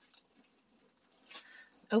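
Quiet room with a brief rustle of plastic packaging being handled, about a second and a half in, just before a child starts speaking.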